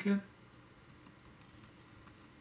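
Faint typing on a computer keyboard: a few light, scattered keystrokes entering a short word into a form.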